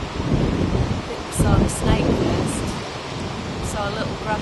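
Gusty wind buffeting the microphone, a loud low rumble that swells and eases.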